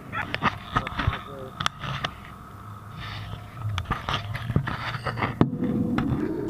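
Cabin of a moving coach bus: a low steady hum under scattered clicks and knocks, with faint voices.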